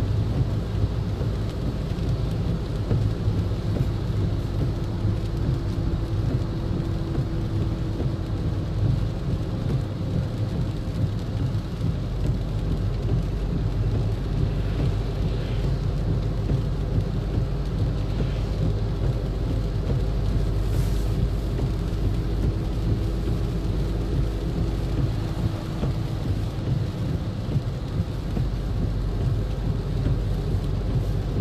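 Steady rumble inside a car's cabin driving through heavy rain on a flooded road: low road and tyre noise mixed with rain on the car and spray, with a faint steady hum.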